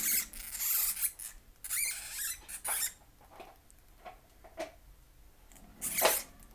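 Two small hamsters fighting over a shared cage: squeaking and scuffling in bursts through the first three seconds, then a few light scratches, and another loud burst near the end.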